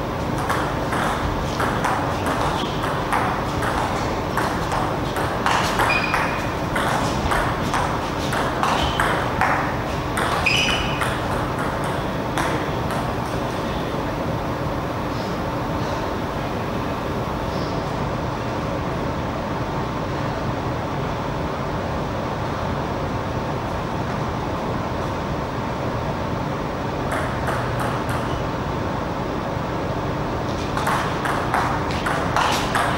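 Table tennis ball being hit back and forth in a rally: quick clicks off the rackets and table for roughly the first dozen seconds, with a couple of short squeaks. After that only a steady hall hum, until a few ball bounces near the end as a serve is readied.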